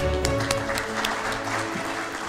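Audience applause over instrumental music: a few separate claps at first, then the clapping fills in about half a second in and carries on under the music.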